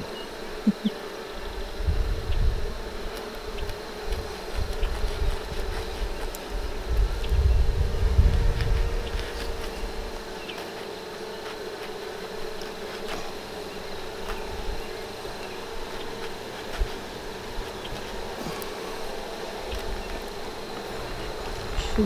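Honey bees buzzing steadily around an open hive, a constant droning hum. Low rumbling runs under it for about the first ten seconds, then settles.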